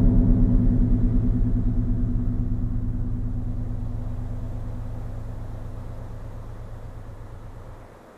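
Film score: a low, sustained synthesizer chord with a fast throbbing pulse, fading slowly and then cutting off near the end.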